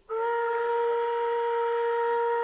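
Background music: a single long note held steady on a wind instrument, beginning suddenly.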